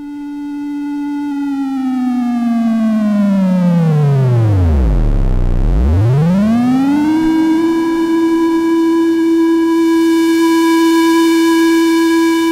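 ELMYRA drone synthesizer oscillator in its normal, non-chromatic tuning mode, its tune knob swept so the note glides smoothly down to a deep low pitch about five seconds in. It then glides back up and holds a steady tone.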